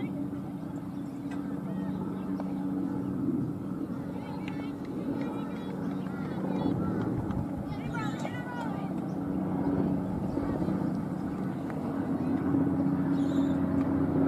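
A steady low mechanical hum, like an engine running, with a couple of held tones that swell slightly near the end. Faint voices and a few high chirps come through over it.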